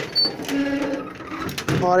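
Wooden cupboard door and its metal latch rattling and clicking as it is handled and shut, with a few sharp clicks about one and a half seconds in.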